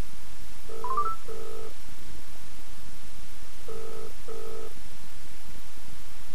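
British-style double-ring ringback tone heard through the Orbyx Visor Bluetooth speakerphone as an outgoing call rings at the other end: two pairs of short rings about three seconds apart, with a brief rising beep during the first ring.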